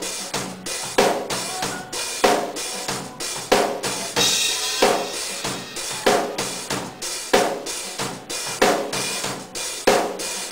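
Acoustic drum kit playing a steady beat, with a strong hit about every 1.3 seconds, lighter kick and hi-hat strokes between them, and a cymbal crash about four seconds in.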